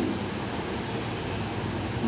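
Steady background hiss and room noise, with no distinct events.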